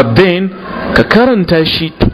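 A man speaking in a lecture, with a couple of short sharp clicks among the words, one at the start and one about a second in.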